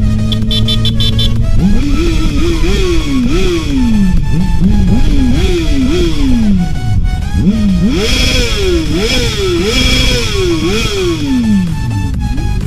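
Motorcycle engine revving, its pitch climbing and dropping again and again from about a second and a half in, over electronic dance music.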